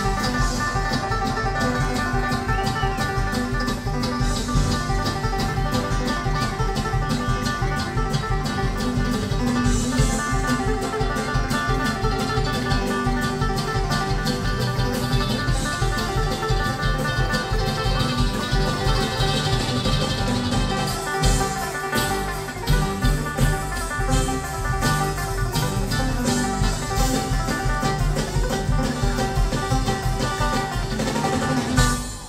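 Live bluegrass-style string band with banjo, mandolin, acoustic guitar, electric bass and drums playing an instrumental passage. About two-thirds of the way through, the sound dips briefly and then comes back in short, choppy hits.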